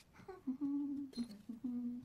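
A voice humming a level note, broken into a few short stretches. The longest stretch comes first and the last one runs to the end.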